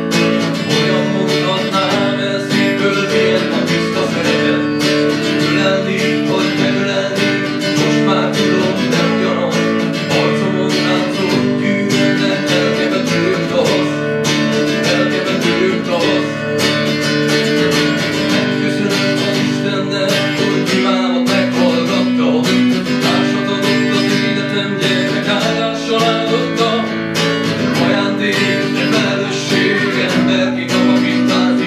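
Acoustic guitar strummed, playing a steady run of chords that change every few seconds.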